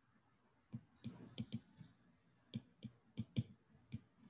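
Stylus tip tapping and sliding on a tablet's glass screen during handwriting: a string of faint, sharp clicks, with a brief scratchy stroke about a second in.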